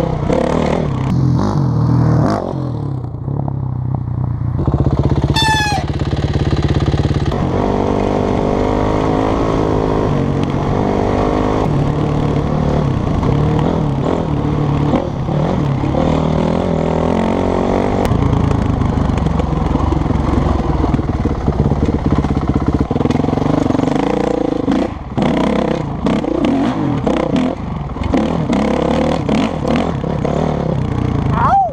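Dirt bike engine running as the bike is ridden along a trail, its pitch rising and falling with the throttle.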